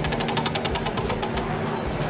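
A spinning prize wheel, its rim pegs clicking rapidly against the pointer flap. The clicks slow and stop about a second and a half in as the wheel comes to rest.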